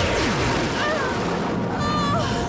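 Dramatic music score under a loud, dense magical rumble and crash sound effect; a whooshing sweep falls in pitch over the first half second.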